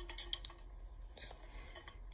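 A few faint clicks in the first half second, then a brief rustle a little over a second in: small objects being handled.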